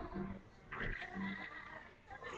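Cartoon soundtrack playing from a television across the room: a high, wavering character voice or sound effect from the show.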